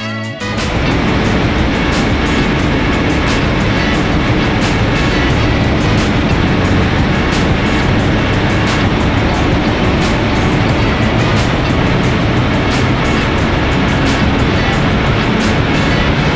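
BMW 116d's four-cylinder turbodiesel engine running under load on a chassis dynamometer, with the tyres driving the rollers. It starts about half a second in and stays loud and steady, with background music underneath.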